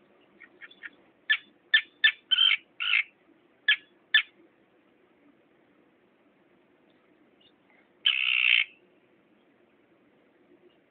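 Terns calling: a quick run of short, sharp calls in the first four seconds, then one longer harsh call about eight seconds in.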